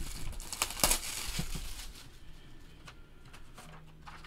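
Clear cellophane wrap being crinkled and pulled off a trading-card box. The crackling is loudest about a second in and thins to a few faint rustles over the last two seconds.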